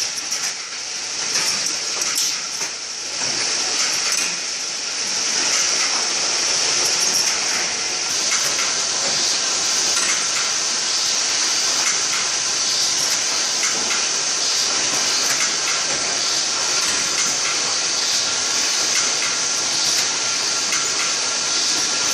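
Automatic carton case-packing machine running: a steady hiss of compressed air with the clatter and clicks of its folding and pushing mechanisms, which are busiest in the first few seconds.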